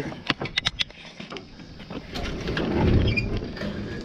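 Handling of a utility trailer's wooden ramp gate: a quick run of light clicks in the first second, then a rustling scrape that swells and fades.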